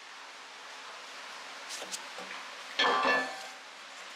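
A steel hitch plate being shifted on a steel welding table: a faint tick just before two seconds in, then a brief metallic scrape and clink a little before three seconds in, over low room hiss.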